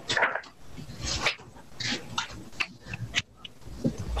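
A dog giving several short barks, spaced about half a second to a second apart.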